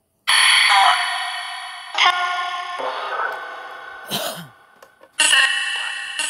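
Necrophonic ghost-box app sweeping its sound bank through echo and reverb: after a moment of silence, a run of abrupt voice-like snippets, each ringing on in the echo until the next one cuts in, about five in all.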